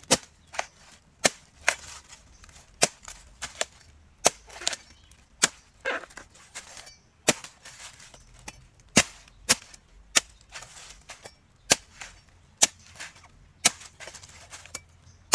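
Machete blade chopping the husk off a fresh green coconut: a long series of sharp chops, about one or two a second at an uneven pace.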